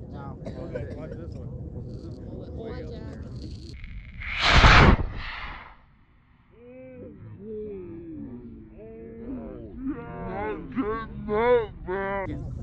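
Solid-fuel model rocket motor igniting and lifting the rocket off the pad: a loud hiss about four and a half seconds in, lasting about a second and a half. Onlookers' voices follow.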